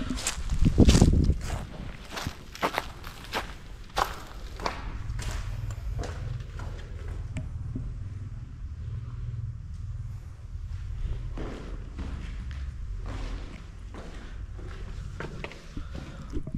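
Footsteps of a person walking at an uneven pace, first over leaf-strewn dirt and then on the concrete floor of an empty bunker. There is a loud low thump about a second in, and a steady low rumble runs under the steps.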